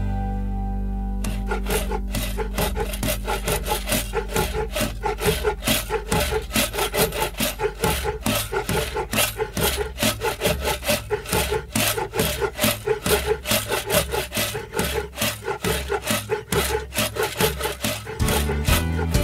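Saw cutting wood in quick, even back-and-forth strokes, starting about a second in, over the song's backing music.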